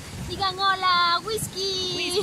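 A young child's voice held in long, wavering sung notes, with a short break partway through.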